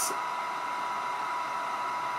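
Steady background hiss with a faint, even whine, unchanging throughout.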